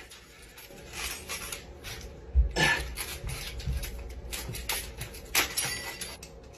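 A hand peeler scraping a large cheese wheel, in irregular rasping strokes, with a low knock about two and a half seconds in.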